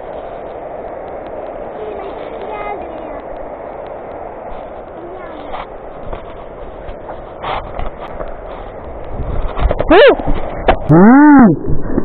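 A steady rushing noise, then near the end two loud, drawn-out vocal whoops that rise and then fall in pitch.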